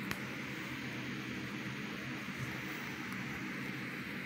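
Steady background hiss with a faint low hum, and one light click just after the start.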